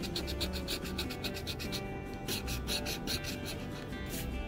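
A coin scraping the coating off a paper scratch-off lottery ticket in quick, rhythmic strokes, about eight a second.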